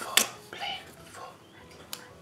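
A sharp plastic click about a fifth of a second in as a plastic ruler is set down on a desk, followed by softer handling sounds and a small tick near the end.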